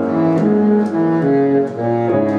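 Baritone saxophone playing a low melody of short held notes that change about three times a second, with grand piano accompaniment.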